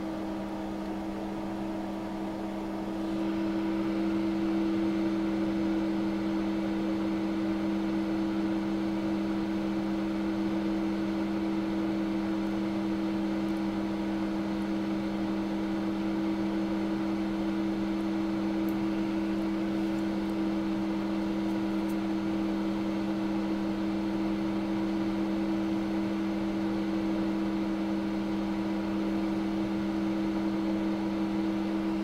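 Hot air rework station blowing: a steady fan hum with two low tones under a rush of air, which grows louder about three seconds in.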